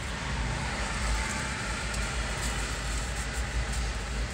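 Train of empty autorack freight cars rolling past at a distance: a steady rumble and rattle of wheels on rail, swelling about a second in.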